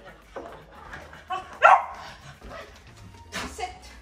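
A German shorthaired pointer puppy gives a single sharp bark about one and a half seconds in, among a few softer yips, and there is a brief hiss near the end.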